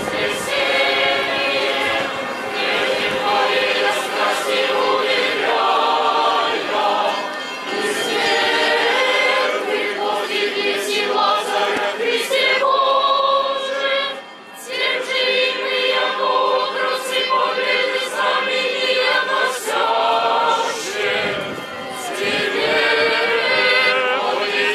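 A choir singing a Cossack song, with a short break a little past halfway.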